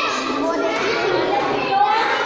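Many children's voices talking over one another, a steady hubbub of chatter with no single clear speaker.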